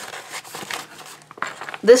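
Clear plastic mesh zipper pouch and paper crinkling and rustling in irregular bursts as paper contents are slid into it and handled.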